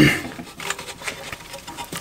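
A few faint clicks and light handling knocks as the half of a transfer case is gripped and turned on a workbench. The very start holds the tail end of a man clearing his throat.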